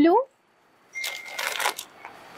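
The tail of a spoken word, then, about a second in, a short dry rustle of folded sequined saree fabric being handled and shifted on a counter.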